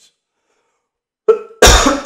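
A man coughing loudly, starting about a second and a half in after a short stretch of near silence.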